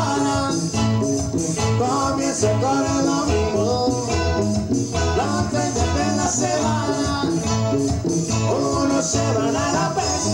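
A live band playing Latin dance music with a steady, even beat and melodic lines over it.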